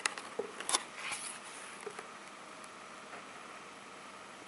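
A cardboard board-book page being turned by hand: a few short clicks and a brief rustle in the first second or so, then only faint steady hiss.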